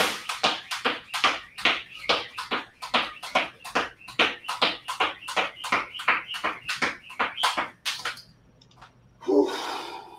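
Jump rope skipped fast, the rope slapping the rubber floor mat with the feet landing in a steady quick rhythm of about four strikes a second, stopping about eight seconds in. A short, louder voice-like sound follows near the end.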